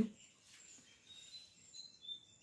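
Faint, short, high chirps of birds in the background, a few thin calls in the second half.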